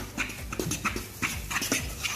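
A spoon scraping and knocking against a metal pan as thick cake batter is stirred by hand, in quick irregular strokes, about four or five a second.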